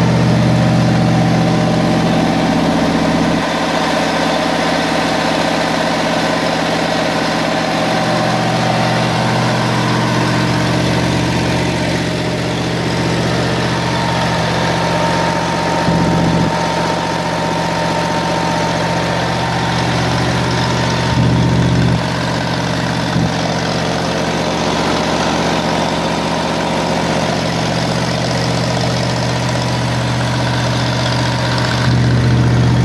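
Wisconsin VF4 air-cooled V4 gasoline engine of a Kohler generator plant running steadily at constant speed, with a few brief louder knocks partway through.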